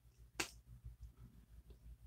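A single sharp click about half a second in, from a plastic lipstick and lip liner duo tube being handled, likely its cap. Otherwise near silence with a faint low hum.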